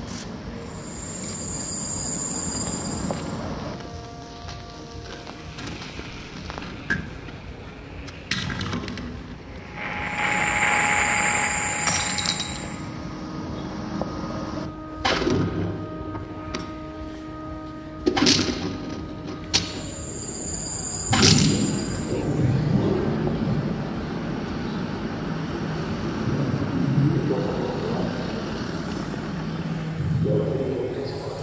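Electronic sound-art installation playing through wall-mounted speakers: a high whistling tone that returns three times, about ten seconds apart, with a burst of hiss, steady held tones and sharp clicks in the middle.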